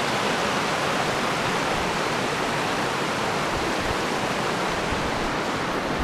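A small river's rapids and low cascades rushing over bedrock, giving a steady, even rush of water.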